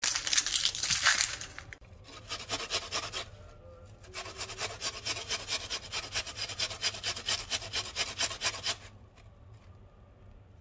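Onion being grated on a metal box grater: quick, even rasping strokes in runs, with a short pause about three seconds in, stopping near the end.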